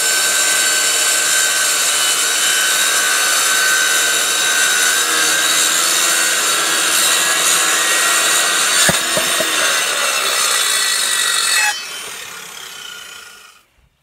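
Electric circular saw cutting through an old wooden board, its motor whining steadily under load for about twelve seconds. The trigger is then released and the blade winds down, fading out.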